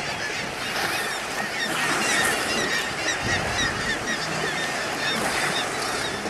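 A dense chorus of many short, high honking animal calls overlapping one another without pause, over the splashing of water.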